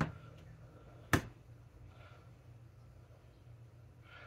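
A single sharp click about a second in: a kitchen knife stabbing a vent hole through the pie crust taps the cast-iron skillet underneath. Otherwise quiet room tone with a faint low hum.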